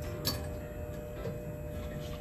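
Soft background music with steady held tones. A single light click about a quarter second in comes from a clothes hanger knocking against a metal rail.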